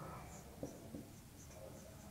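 Marker pen writing on a whiteboard: a few short, faint, high-pitched strokes and small ticks as the letters are written.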